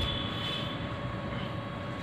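Steady background hum and hiss with no distinct strokes, with a soft bump at the very start and a faint high whine that fades out under a second in.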